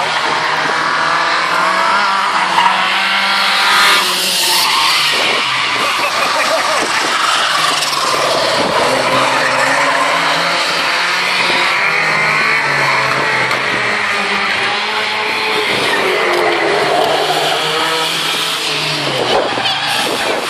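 Several race cars' engines revving up and down as they lap a short oval, with tyres skidding and squealing through the corners.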